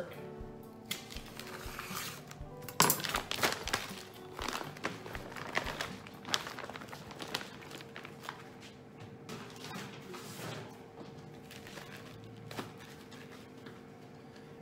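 Plastic packaging bag crinkling and rustling as a whole yellowtail half-fillet is pulled out and handled on a wooden cutting board, with a sharp thud about three seconds in. Background music plays throughout.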